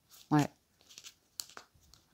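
A deck of tarot cards being thumbed through by hand, card by card: a few faint clicks and soft slides as the cards pass from hand to hand. A single spoken word comes just before the first card sounds.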